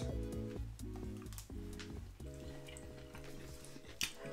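Quiet background music of soft held chords over a low bass, with a few faint wet clicks of chewing a mouthful of sushi.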